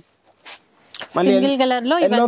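A few brief rustles and swishes of a saree's cloth being swept aside and handled, then a man starts talking about a second in.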